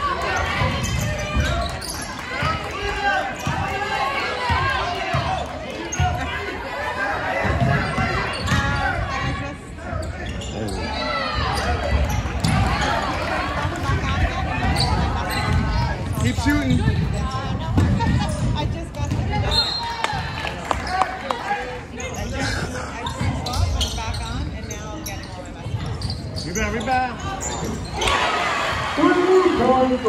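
Basketball dribbling and bouncing on a hardwood gym floor, ringing in a large hall, under constant background chatter and calls from players and spectators. A held, pitched voice-like call comes in near the end.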